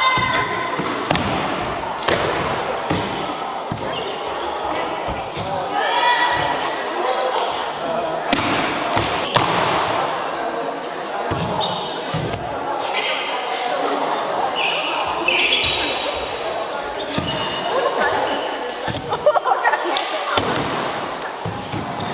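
Irregular thuds of feet and bodies landing and stamping on a training-hall floor, with voices in the background, all echoing in a large room.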